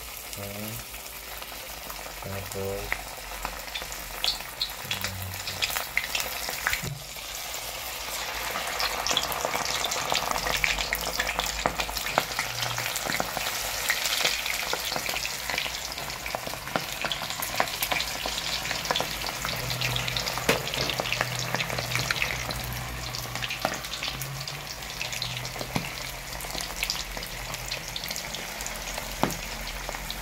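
Battered shrimp deep-frying in hot oil in a wok: a steady sizzle dense with small crackles and pops. It grows louder about eight seconds in, as more pieces go into the oil.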